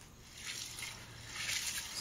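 Faint sloshing and trickling of water in a glass bowl of black-eyed beans being washed in a stainless-steel sink, growing a little louder toward the end.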